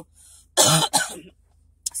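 A woman coughs: one loud, short cough about half a second in, after a fainter breath.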